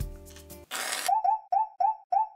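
Background music stops about half a second in, a short whoosh follows, and then a run of short, identical boop-like sound effects starts, repeating about four times a second.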